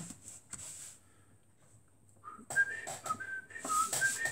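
A man whistling a short tune of separate notes, starting about halfway in, with a few light clicks from handling the scratchcard.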